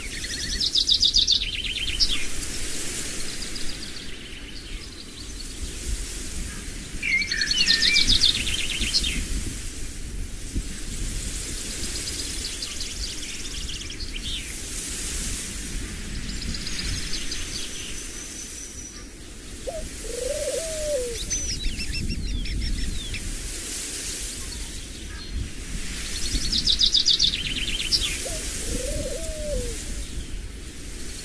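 Small songbirds singing, with trilled phrases repeating every several seconds. Two short, lower calls come in the second half over a steady low rumble.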